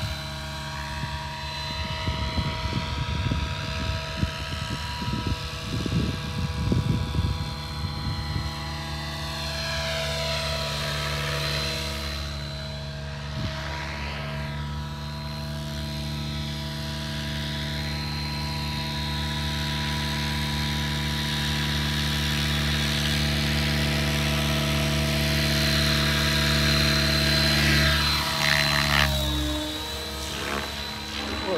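Electric RC helicopter (Align T-Rex 700) in flight: a steady, many-toned whine from the motor, gears and rotor holds one pitch and swells and fades as the helicopter moves about. Rumbling gusts run through the first several seconds, and the tones drop away just before the end.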